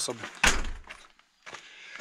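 An exterior house door slamming shut once, about half a second in, a sharp bang with a deep thud that dies away within half a second.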